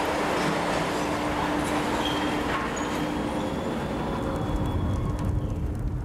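Garbage incinerator plant machinery in the refuse bunker: the overhead grab crane runs with a steady hum and a dense mechanical noise as refuse drops from its grab. The hum fades a little before the end as a deeper rumble rises.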